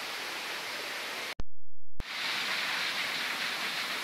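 Steady hiss of outdoor background noise, broken about a second and a half in by a half-second dropout to dead silence with a sharp click at each end, where the video is spliced.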